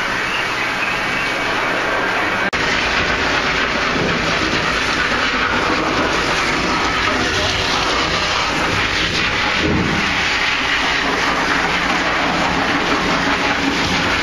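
Water spraying from a dog-wash hose onto a dog's wet coat in a wash tub: a loud, steady rushing hiss, with an abrupt break about two and a half seconds in.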